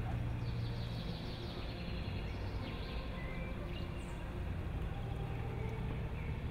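Quiet outdoor ambience: a steady low background rumble with a few faint, short bird chirps in the first few seconds.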